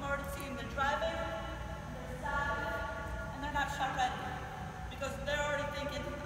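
A person's voice in a large gym hall.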